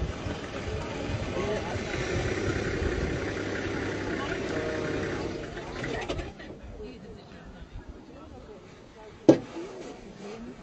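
Vehicle engine idling, dropping much quieter about six seconds in; a single sharp knock near the end is the loudest sound.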